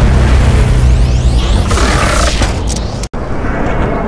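Cinematic portal sound effect: a loud, dense swirl of noise with a heavy low end and falling whooshes on top. It cuts off abruptly about three seconds in, and the next, lighter effect sound begins.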